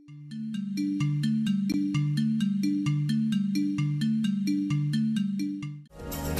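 Background music over a holding slate: a short pattern of low notes repeating about once a second, cut off just before the end by a different, fuller piece of music.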